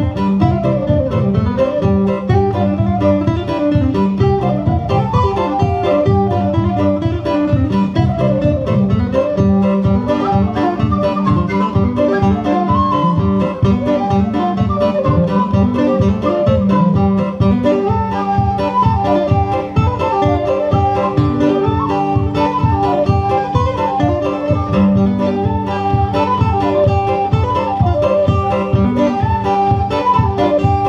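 Guitar and whistle duo playing a lively folk instrumental: the guitar keeps a steady rhythmic accompaniment while the whistle plays a quick melody over it, both amplified through a PA.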